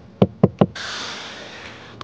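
Three quick knocks of a knuckle on the Xiaomi SU7's interior door trim panel, followed by a steady hiss that slowly fades.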